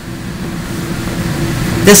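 A steady low rumble with a faint steady hum in it, growing slightly louder; a woman starts speaking near the end.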